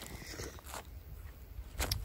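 Low wind rumble on the microphone with a few faint rustles and scuffs from the camera being moved.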